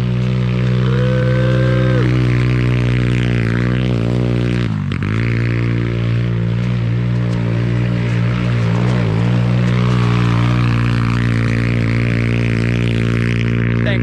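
Small four-stroke go-kart engine, roughly 125–150 cc, running hard as the kart is driven around. It makes a loud, steady drone, and its pitch dips and comes back up about five seconds in.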